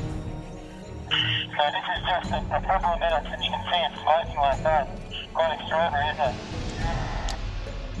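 A man speaking over low background music, then a brief hiss near the end.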